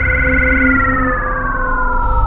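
Synthesized sci-fi flying-saucer effect for a logo intro: a loud high whine of two tones that holds, then slowly glides downward from about half a second in, over a low synth rumble that comes in at the start.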